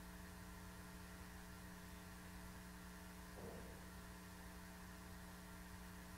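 Near silence: a steady electrical mains hum on the recording, with one faint, brief sound about three and a half seconds in.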